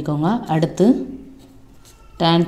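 Speech for about a second, then the faint scratching of a pen writing on paper.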